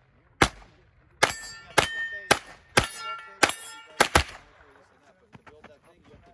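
Eight carbine shots, irregularly spaced, fired while moving through a shooting stage; several are followed by a brief metallic ring, typical of hits on steel targets. Small faint clicks follow after the last pair of shots.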